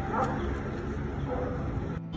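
Steady street din with two short high cries about a second apart, the first one rising in pitch.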